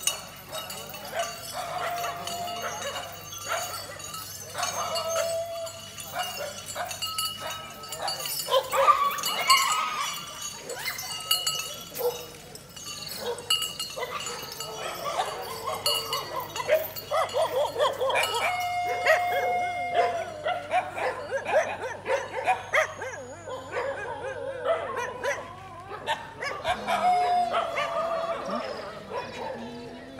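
Dogs barking repeatedly and irregularly through a busy mix of other sound.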